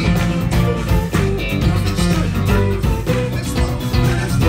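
Live funk band playing a steady groove: electric guitar, bass guitar and drum kit, with keyboard.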